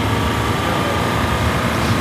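Steady running of a motor vehicle engine with road noise, an even hum without breaks.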